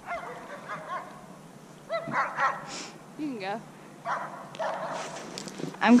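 A dog whining and yipping in a series of short, pitched cries, one sliding downward about three seconds in.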